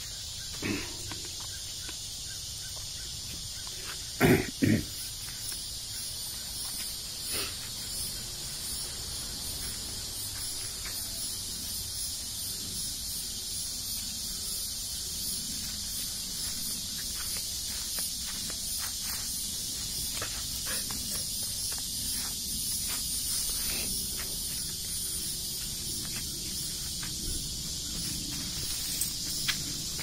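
A steady insect chorus of crickets chirring in the background, with a faint pulsing trill above the hiss. Scattered small rustles and knocks, likely a dog moving about on dry leaves and sandy ground, break through it, and the loudest is a pair of sharp thumps about four seconds in.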